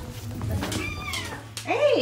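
Bengal cat meowing twice: a higher, falling call about a second in, then a louder, arching meow near the end.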